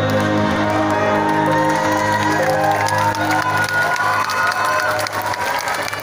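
Closing sustained notes of a live song sung by four women with backing music, as the concert audience starts cheering and applauding over it, the claps growing toward the end.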